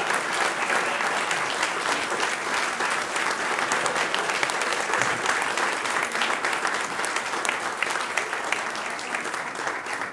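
A roomful of people applauding: many hand claps blending into a steady, dense sound that begins to die down near the end.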